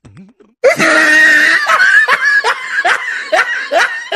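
Loud, high-pitched laughter starting just under a second in, running on as a quick series of rising 'ha' bursts, about two or three a second.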